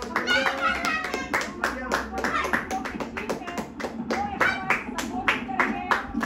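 Hands clapping in a quick, fairly even rhythm, about five claps a second, with voices mixed in.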